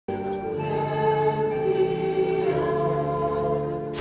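A choir singing slow, held chords, the notes shifting about once a second.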